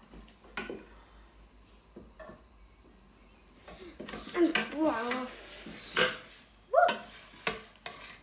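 A metal spoon clinking and scraping against a hot ridged grill pan and a steel pot as browned oxtail pieces are lifted across, with a few sharp clinks in the second half and some sizzling from the pan.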